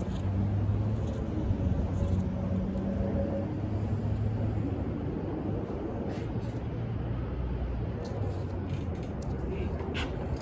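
A low, steady engine hum, the kind of rumble from motor traffic, running throughout, with a few light clicks near the end.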